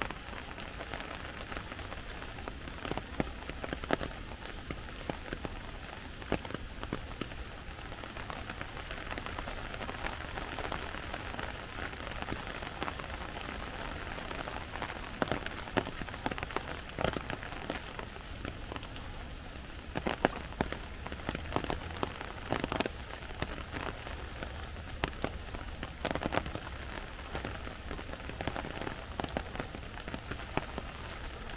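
Steady rain, with many sharp, irregular drip taps scattered throughout.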